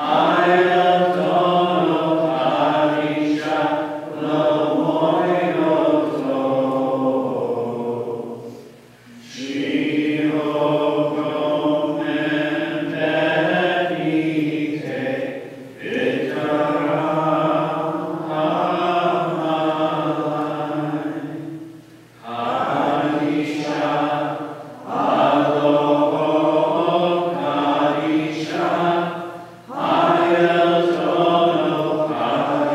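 Maronite liturgical chant sung in long sustained phrases, broken by brief pauses between phrases.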